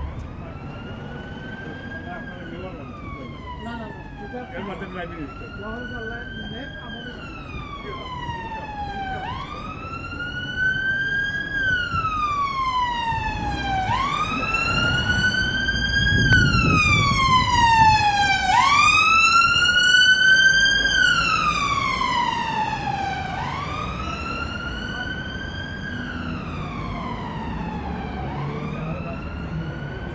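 Emergency vehicle siren in a slow wail, each cycle rising quickly and then falling slowly, about every four to five seconds; it grows louder toward the middle and then fades, over the steady noise of street traffic.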